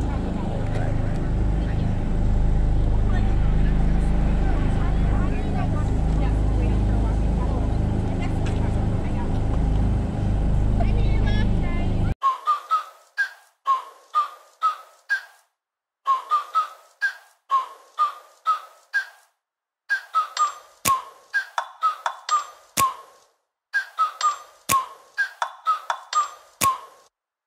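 Low, steady road and engine rumble inside a moving car, then a sudden cut about twelve seconds in to background music: a light melody of short, bright, evenly repeated notes with a few sharp ticks.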